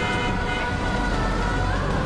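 Road traffic with a vehicle horn held in a long, steady blare over the rumble of passing engines.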